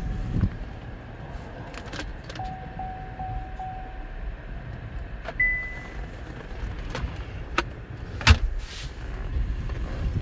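Low steady hum inside a 2019 Cadillac XT5's cabin, with scattered clicks and knocks from the trim and controls being handled, and one short high beep about five seconds in.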